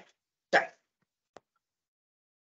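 A single short spoken word from a video-call speaker, then a brief faint click; otherwise the line is gated to silence.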